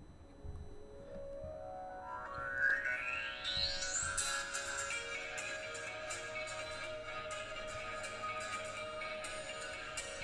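A song playing through the Amazfit GTR 2 smartwatch's small built-in speaker. It opens with a pitch rising steadily over the first few seconds, then settles into a tune with light percussion.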